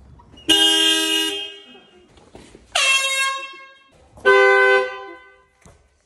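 A car horn sounded three times in short blasts of under a second each, about a second apart, its flat pitch holding steady through each blast.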